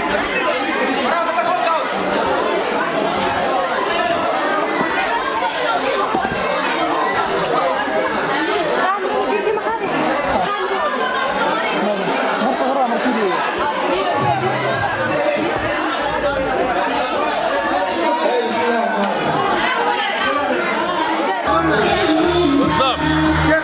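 Crowd chatter: many people talking at once in a large hall, a steady din of overlapping voices with the hall's echo.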